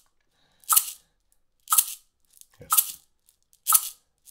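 A single maraca shaken in crisp, evenly spaced quarter-note strokes, one a second, at 60 beats per minute; each stroke is a short, sharp rattle of the pellets inside.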